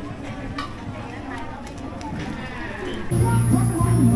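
Night-market street sounds with people talking in the background, then loud music starts abruptly about three seconds in.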